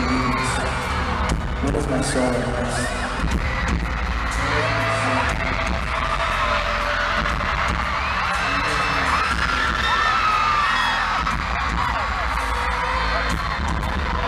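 Live arena concert heard from the crowd: a thudding bass beat over the PA, with many fans screaming over it.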